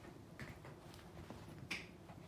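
A dachshund puppy moving about on a hardwood floor while mouthing plush toys: a few scattered short clicks and scuffs of claws and paws on the wood, the sharpest just before the end.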